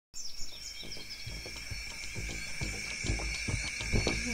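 Tropical rainforest ambience: a steady high insect drone, with a few bird chirps in the first second. Music with low beats fades in from about a second in and grows louder.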